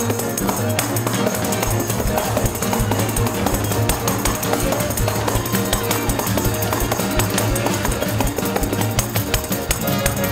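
Tambourine shaken and struck in time with a live band playing music with a steady beat.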